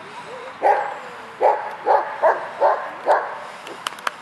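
A dog barking six times in quick succession, short sharp barks about half a second apart, after a brief faint whine.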